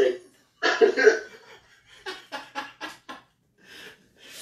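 A man laughing hard: a loud burst of laughter, then a quick run of short 'ha' pulses about two seconds in.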